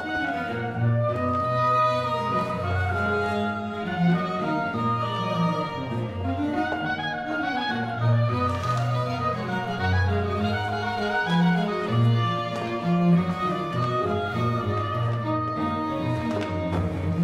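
String ensemble music with violins carrying the melody over cellos and double basses, whose bass line moves from note to note.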